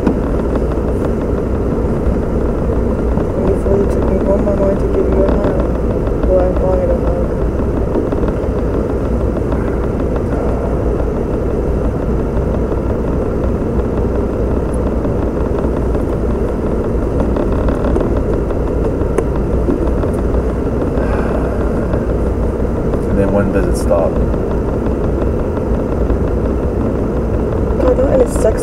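Steady low road and engine noise inside a car, with faint, muffled voices of a conversation beneath it.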